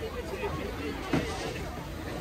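Voices of several people talking in the background, with a brief loud sound about a second in.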